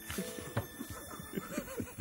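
Several people laughing together at a table, a quick run of short chuckles.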